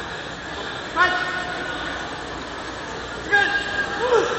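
Kendo fencers' kiai shouts: a sharp, high-pitched yell about a second in and another near the end, each briefly drawn out, over the steady background noise of a crowded sports hall.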